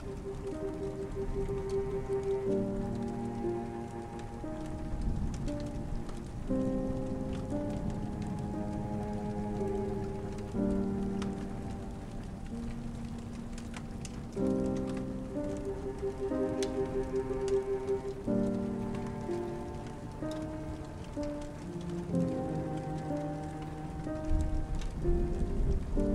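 Steady rain falling, with scattered faint drop ticks, under slow instrumental music of long held notes and chords that change every couple of seconds.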